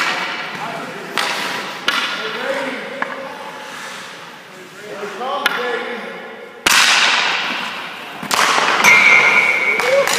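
Ice rink practice sounds: a series of sharp clacks of hockey sticks and pucks, the loudest about two-thirds through, with a long scraping hiss of skates on the ice after the loudest hits. Voices talk faintly in between.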